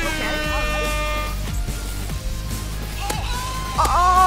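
Meme-style air horn sound effect blasting one steady note for about a second and a half, over background music. Near the end a second, higher tonal sound comes in.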